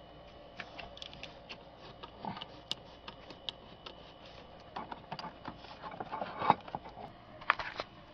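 Irregular light clicks and knocks of a hand tool being worked in among metal AC line fittings in an engine bay, with a couple of sharper knocks near the end.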